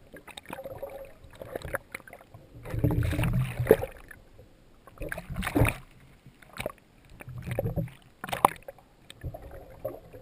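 Seawater sloshing and splashing around a camera bobbing at the ocean surface, dipping under and breaking out of the water. The sound comes in several irregular bursts of splashing, the loudest a few seconds in.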